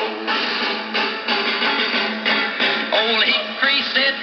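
A restored 1937 Emerson AL149 tube table radio playing a country-folk song through its speaker, with drums and guitar between sung lines. The sound is thin, with little deep bass and no high treble.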